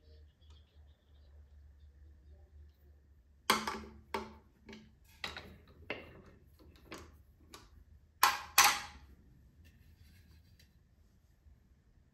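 About ten sharp, separate knocks and clicks over some five seconds, the loudest a close pair near the end, as a finished yew-and-mahogany bowl is handled and taken off the metal jaws of a stopped lathe chuck.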